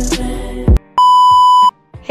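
Intro music that stops about three quarters of a second in, followed by a single loud electronic beep: one steady, unchanging tone lasting under a second that cuts off sharply.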